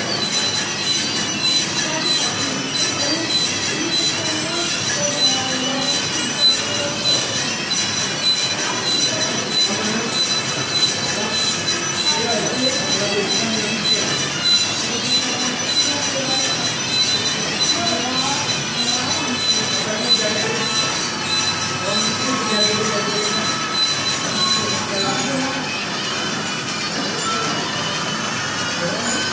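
Motor-driven mechanisms of animated museum figures running, giving a steady, loud metallic squealing with a high whine throughout, over faint voices.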